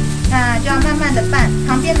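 Background music: held low notes with a quick pitched melody moving above them.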